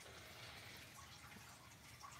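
Near silence: faint room tone between remarks.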